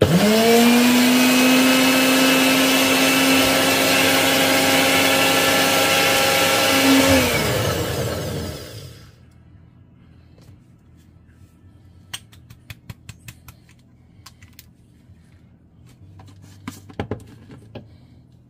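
NutriBullet blender motor grinding oven-dried stinging nettle leaves into powder. It spins up quickly to a steady high whine for about seven seconds, then dips in pitch and winds down. Scattered light clicks follow.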